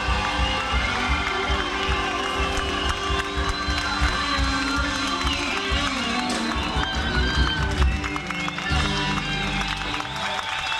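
Full live blues band with drums, bass and electric guitars playing a heavy shuffle. The drum beat stops about eight seconds in and a final chord is held.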